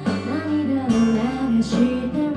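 Live band music: a woman singing into a microphone over a strummed acoustic guitar.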